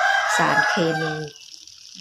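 A rooster crowing for just over a second, then stopping, over the splash of water poured from a watering can onto garden soil.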